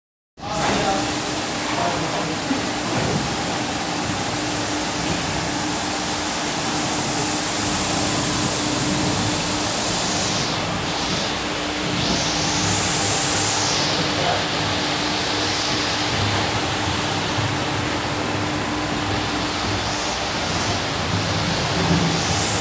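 MAXIS automatic carpet washing machine running: its rotary brushes scrub a wet, foamy carpet, making a loud, steady rushing noise with a constant motor hum.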